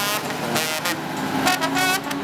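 Brass band playing short, punchy notes from a passing bus, with the loudest notes near the end, over the bus's engine and street traffic noise.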